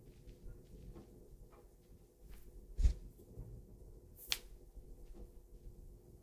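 Fingers and a knuckle kneading and pressing the oiled sole of a bare foot, heard close up: soft skin-on-skin rubbing with faint small ticks, a dull thump a little before the middle and one sharp click about two-thirds through.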